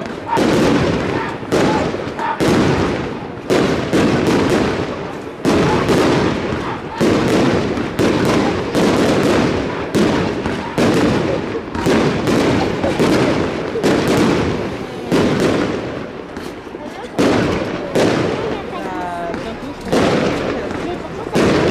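Fireworks display: a steady run of sharp bangs from launches and bursting shells, roughly one to two a second, with crackling in between.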